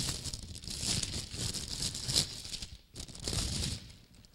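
Clear plastic bag crinkling and rustling as a loaf of bread is taken out of it, close to a handheld microphone. The crackling breaks off briefly just before three seconds in, then goes on for most of another second.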